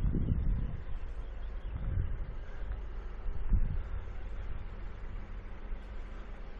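Wind buffeting the microphone outdoors: a low, steady rumble with a few soft low thumps.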